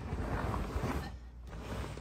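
Folded pet stroller being pushed and shifted on the trunk's rubber mat: fabric and frame rustling and scraping, louder in the first second.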